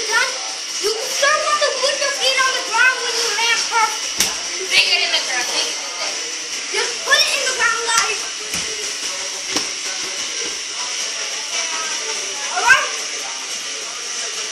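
Several children's voices chattering and calling out over one another, with a few sharp knocks or thumps scattered through.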